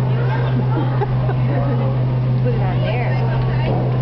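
A steady low hum under faint background voices and chatter of a busy room.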